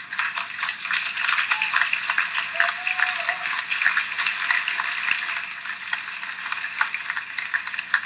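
Audience applauding: many hands clapping in a dense, steady patter that grows a little softer in the second half.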